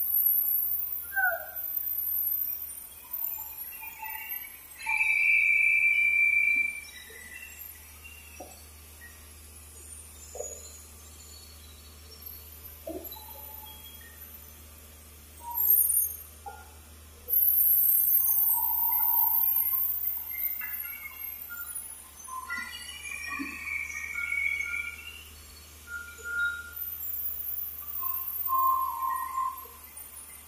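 Chime-like tones: short ringing notes scattered throughout, with louder, very high shrill tones at about five seconds and again from about seventeen to twenty-two seconds, over a steady low hum.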